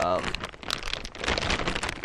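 Plastic packaging bags crinkling and rustling in quick irregular crackles as they are handled. The bags hold a silicone coolant hose kit and a bag of hose clamps.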